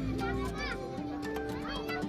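Children's voices shouting and chattering among a beach crowd, with music playing underneath.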